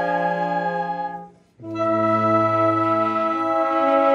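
Wind band of clarinets, saxophones, flute and brass horns playing a slow piece in long held chords. The sound dies away about a second and a half in, then the band comes back in on a new chord with a low bass note.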